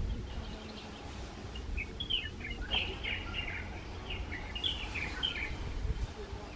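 Small birds chirping in quick, high twittering phrases, thickest from about two seconds in until shortly before the end, over a low steady rumble.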